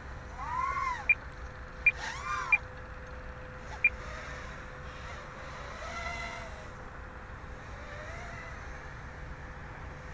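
Quadcopter's brushless motors and props whining up and down in pitch as the throttle is punched and eased, twice in quick succession near the start and more faintly later on. There are also four very short, sharp high beeps in the first four seconds.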